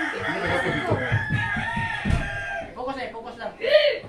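A rooster crowing, with people talking around it.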